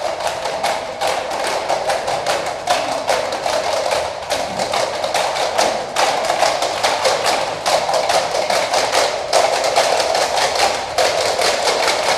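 Plastic cups and bowls struck by a group of young percussionists, making a quick, steady rhythm of sharp clacks.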